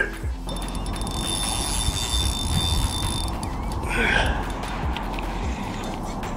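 Fixed-spool reel's drag ticking in a rapid, steady run as a hooked common carp pulls line.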